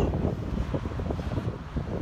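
Wind buffeting a phone's microphone outdoors, an uneven low rumble with no speech.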